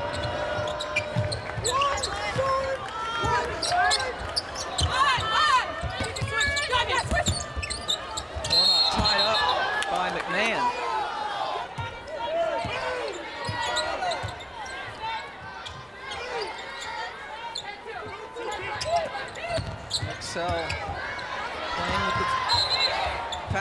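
A basketball being dribbled on a hardwood court during live play, its bounces heard as repeated low knocks, over a steady bed of players' and crowd voices in an arena.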